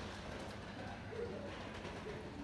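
Faint ambience of a quiet pedestrian shopping street, with a low steady hum, light footstep-like ticks, and a short low cooing call about a second in.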